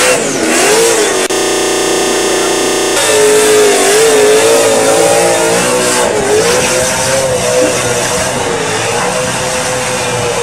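A supercharged burnout car's engine is held high in the revs, its pitch wavering up and down, with a steadier stretch of about two seconds near the start. Beneath it runs a broad hiss from the spinning, smoking tyres.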